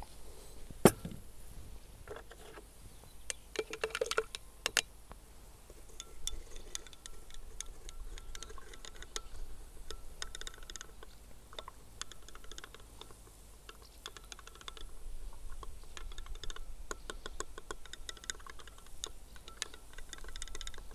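A metal stirring rod clinking and tapping against the inside of a glass beaker as sodium hydroxide is stirred into water to dissolve: a sharp knock about a second in, then a long run of rapid light clinks with a faint glassy ring.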